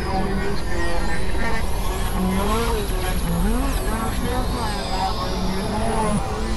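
Dense layered experimental electronic noise: several synthesizer recordings mixed together, with pitched tones bending up and down over a steady low rumble and hiss.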